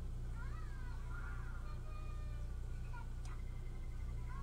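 A house cat meowing faintly, a few short rising-and-falling calls in the first second and a half, over a steady low hum, with one light click about three seconds in.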